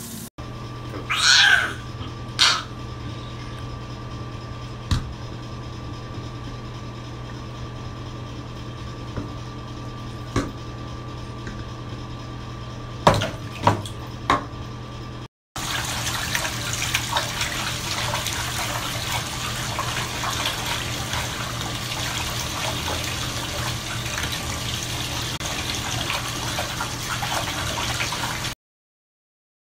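A few short splashes in bathwater over a steady low hum; then, after a cut, a bathtub faucet running steadily into the tub.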